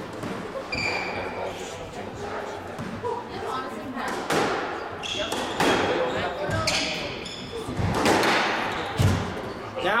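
Squash rally: the ball is struck by rackets and smacks off the court walls in a string of sharp hits in an echoing hall, most of them in the second half. There are short high squeaks, typical of shoes on the wooden floor.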